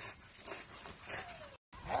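Two pit bulls wrestling, heard faintly, with a short falling whine about a second in. The sound cuts off abruptly near the end.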